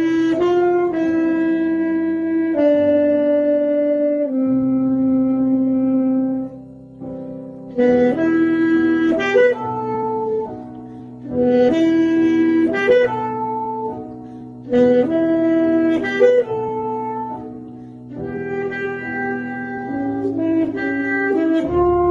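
A solo wind instrument playing a slow melody in phrases of long held notes, each phrase ending in a short pause, over a lower sustained accompaniment.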